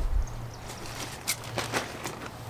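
Rustling of fabric and polyester fibre stuffing being pulled out of an outdoor throw pillow, with a low rumble at the start and a few short scratchy rustles later on.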